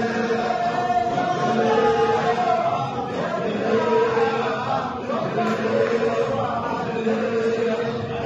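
A congregation of men chanting Sufi hadra dhikr in unison, repeating one short phrase in a steady rhythm.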